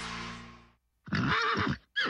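Bumper music fades out, and after a moment of silence a horse whinnies once, for about half a second.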